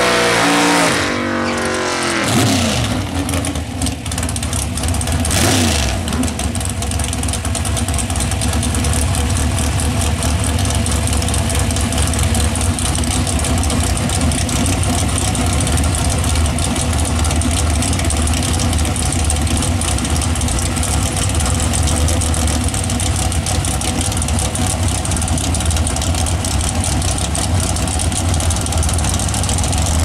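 Drag-racing engines revving at the end of a burnout, their pitch dropping away within the first two or three seconds, then a loud, steady idle as the cars sit staged at the starting line waiting to launch.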